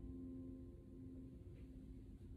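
Acoustic guitar's final chord ringing and fading away, the last low notes dying out a second or so in, leaving faint room tone.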